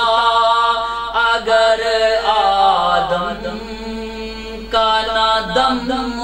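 A man's solo voice chanting a Sufi devotional poem (kalam) in long, drawn-out notes that bend up and down in pitch. It grows softer in the middle and swells again near the end.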